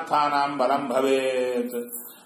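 A man chanting a Sanskrit verse in a drawn-out, sing-song recitation, holding a long note in the second half.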